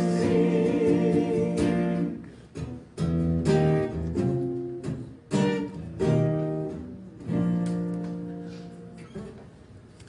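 Worship music: singing with strummed guitar chords, each chord ringing out and fading, the music dying away near the end.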